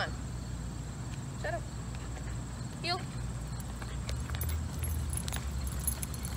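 Outdoor background noise with a steady low rumble. Two brief voice-like sounds come about one and a half and three seconds in, and faint light clicks follow in the second half.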